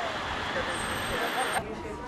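Steady traffic noise with faint voices, which cuts off suddenly about one and a half seconds in.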